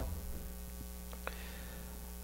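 Steady low electrical mains hum from the microphone and sound system, with a few faint clicks around the middle.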